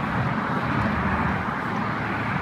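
Wind rushing over the phone's microphone, with a steady rumble of road traffic beneath it.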